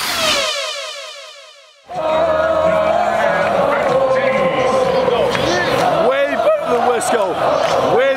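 An edited falling sweep sound effect that fades away over about two seconds. Then a loud stadium crowd cuts in abruptly, singing and shouting together on a held pitch, with individual whoops on top.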